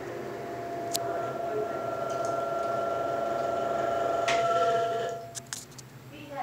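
Vintage exhaust fan running: a steady airy hum with a motor whine. Near the end the whine cuts off, the sound drops away, and a few clicks follow.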